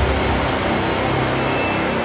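Cinematic trailer-style soundtrack: a deep, sustained rumble with a wash of hiss, the tail of a booming hit, slowly fading.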